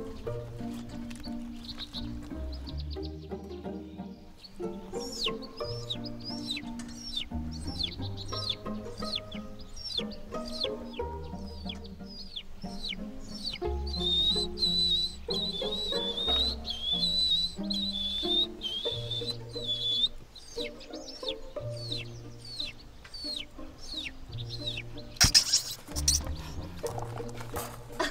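Chick peeping, performed as a man's vocal mimicry of a baby chicken: many short, high, falling cheeps in quick succession, with a longer wavering trill in the middle. Soft background music runs underneath, and a brief loud noisy burst comes near the end.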